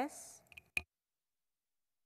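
A few sharp clicks, the last the loudest, then the audio cuts off to dead silence.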